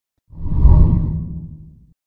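A deep whoosh transition sound effect that swells in about a third of a second in and fades away over the next second or so.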